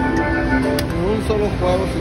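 Electronic music of held tones from a spinning-reel slot machine as a spin starts, with a person's voice sliding up and down from about a second in.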